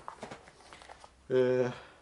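Faint rustling and a few light clicks as a soft fabric motorcycle helmet face mask is handled, followed by a short flat vocal 'eh' from a man's voice.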